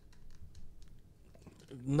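A few faint, small clicks and taps in a quiet room, then a man's voice just before the end.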